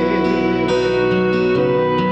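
Karaoke backing music for an enka song playing an instrumental passage of held notes, with no voice.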